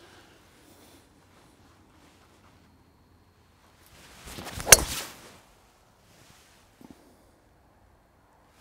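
A golf driver swung at full speed: a rising swish of the club through the downswing, then the single sharp crack of the driver face striking the ball just under five seconds in.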